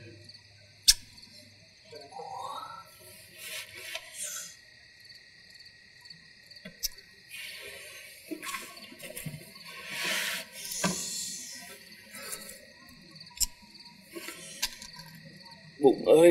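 Crickets chirping steadily in a night-time chorus, with a few scattered sharp clicks and soft rustles.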